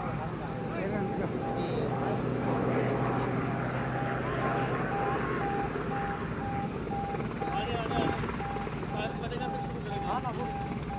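Helicopter flying overhead, its rotor and engine sound mixed with the voices of people shouting and talking.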